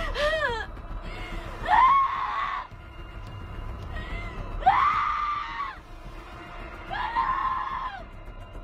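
A woman wailing and sobbing in distress: a quick run of short sobs at the start, then three long wailing cries, each rising and falling in pitch.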